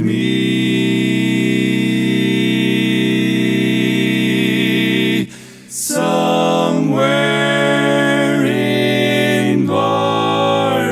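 Barbershop quartet singing a tag in four-part a cappella harmony: a long held chord, a short break about five seconds in, then a run of shorter moving chords. The lead flattens each flat seventh, so the whole quartet's pitch sinks and by the end sits about a whole step below key.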